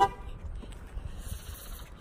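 A single short car horn toot right at the start, cut off within a fraction of a second, then only a low rumble of movement.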